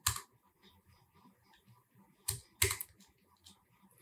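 Computer keyboard keys being pressed: one sharp click at the start, then a quick group of two or three clicks about two and a half seconds in.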